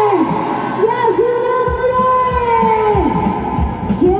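Live worship music: a woman sings long, drawn-out notes that slide down at their ends, over sustained keyboard backing, with a low drum beat coming in a little under two seconds in.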